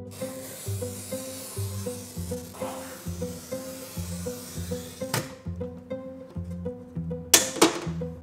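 A pistol-grip oil-fed glass cutter scoring a straight line across a sheet of clear glass along a ruler: a steady high hiss for about five seconds that stops abruptly, over plucked-string background music. A few sharp knocks near the end are the loudest sounds.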